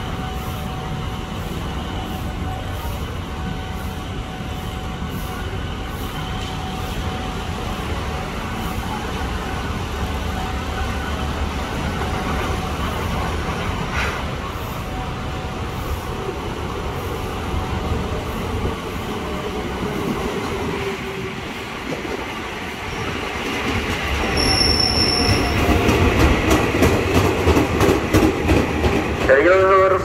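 Electric KRL commuter train approaching and pulling into the station, its motor whine falling in pitch as it slows and brakes, with a brief high squeal about 25 seconds in. It grows louder over the last several seconds as the cars roll past.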